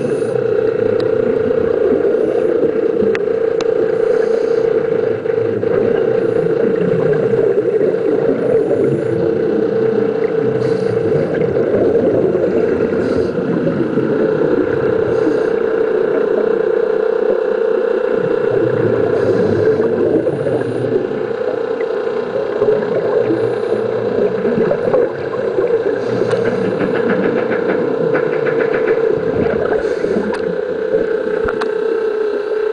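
Steady droning hum over a rushing noise, heard underwater through a submerged camera during a scuba dive.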